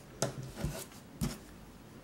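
Hands handling a crochet piece and its yarn tail on a tabletop: three short knocks and rubs in the first second and a half.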